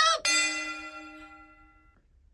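A single bell chime strikes about a quarter second in, then rings and fades over about a second and a half before cutting off. It is the start signal for a 60-second timed round.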